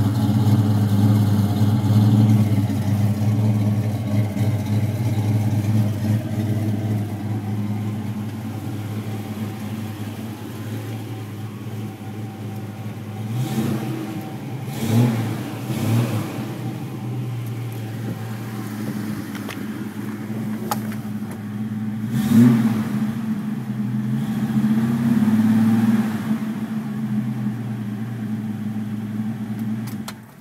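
1965 Ford Mustang's 200 cubic-inch inline six idling steadily, first at the tailpipe and then from inside the car. A few short rises in pitch about halfway through and again later are quick blips of the throttle.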